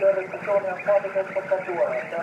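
A voice making a public announcement through a loudspeaker, thin and tinny, speaking on without a pause.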